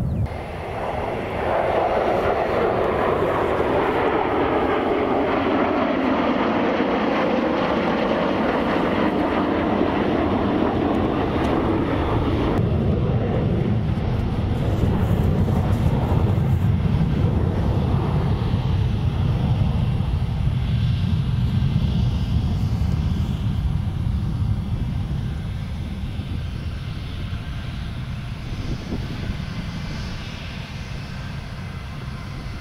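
Jet roar from a formation of Chengdu F-7 fighters flying overhead, its pitch falling slowly as they pass. About twelve seconds in, it turns abruptly into a lower rumble that fades near the end.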